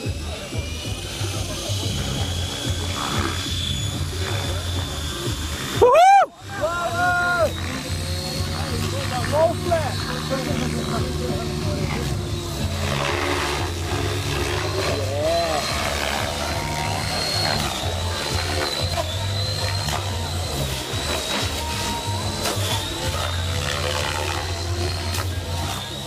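Radio-controlled model helicopter running on a warm-up flight: a steady high whine from its motor and rotor drive, rising a little at the start as the rotor spools up, over a low rotor hum. A loud thump about six seconds in.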